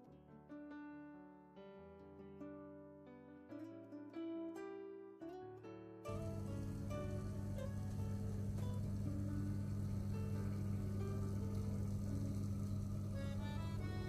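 Soft plucked-string background music for about six seconds, then a steady low hum starts abruptly and runs on. The hum is an electric oven's fan running, with the music faint under it.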